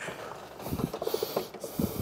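Faint rustling and small knocks of hands and grips working a clutch pedal return spring into its mounts in a pedal box.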